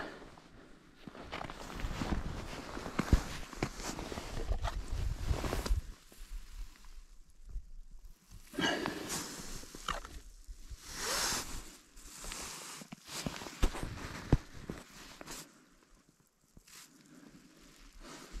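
Footsteps and handling noises on thin, wet ice at a fishing hole: irregular stretches of shuffling and scraping with scattered clicks, broken by quieter pauses, the quietest near the end.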